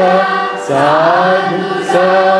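A large group of students singing a Carnatic song in raga Kamas in unison, holding long notes, with a brief break for breath about half a second in.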